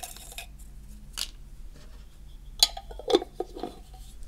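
A glass jar of folded paper slips being handled: faint paper rustle, then a few sharp clinks of glass and the jar's metal screw lid, the loudest about two and a half seconds in.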